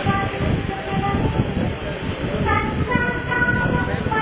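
Voices singing or chanting over a dense crowd murmur, with held notes from about halfway through.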